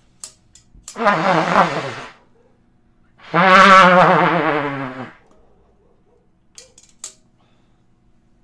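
Trumpet blown by an unsteady player: two held notes, the first about a second long and the second about two seconds, its pitch wavering. A couple of faint clicks near the end.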